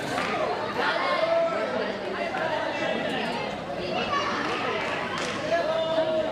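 Speech only: voices talking, with overlapping chatter, in a large hall.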